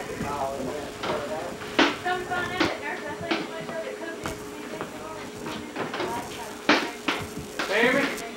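Voices talking over faint background music, with about half a dozen sharp knocks scattered through.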